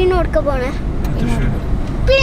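A child's high voice talking inside a car cabin, over a steady low rumble from the car.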